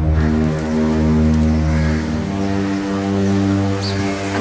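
Dramatic TV-serial background score: a low synthesizer chord held steady, with a slight shift in the chord about halfway through.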